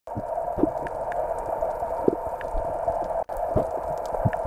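Underwater sound picked up by a camera in a waterproof housing: a steady muffled hiss with scattered low thumps and faint clicks, and a brief cut about three seconds in.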